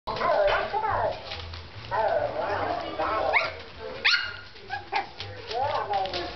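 Havanese puppy yapping and barking in play, with two sharp rising yelps about three and four seconds in.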